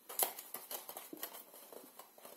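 Cardstock crinkling and ticking as fingers pinch the corners of a folded paper gift box and press its sides together. There is a sharper tick about a quarter second in, then light scattered rustles.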